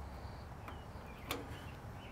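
A single small click about a second in, as a smoker's control knob is pulled off its valve stem, over faint room tone.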